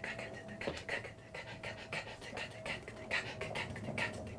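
A man making rhythmic, breathy mouth sounds: short sharp exhales about three or four a second, like vocal percussion or beatboxing.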